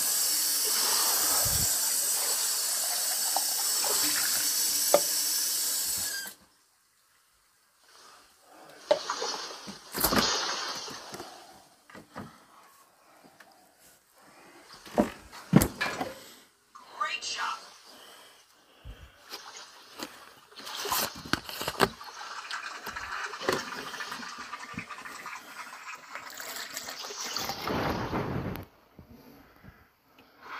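Water running steadily from a tap, cutting off suddenly about six seconds in. Then come scattered knocks and clatter, and a second long run of water near the end.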